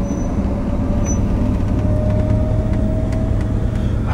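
Car engine and road noise heard from inside a moving car's cabin. It is a steady low rumble with a faint tone that rises slightly in pitch as the car drives along.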